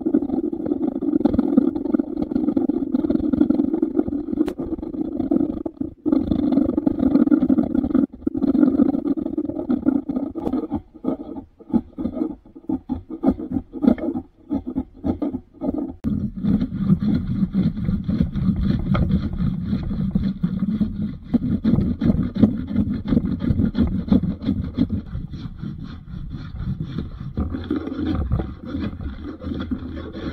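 Hand tools, a card scraper and a hand plane, worked in quick repeated strokes across an oak board, scraping and shaving away the ridges left by the saw cuts. The strokes run almost without pause at first, break into separate strokes around the middle, and then go on with a deeper tone.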